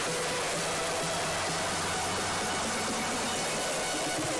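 Music for a group dance display playing over a public-address system, faint beneath a steady hiss.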